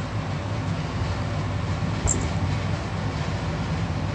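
Steady background hum and hiss, a low continuous rumble with no voice, with one small click about two seconds in.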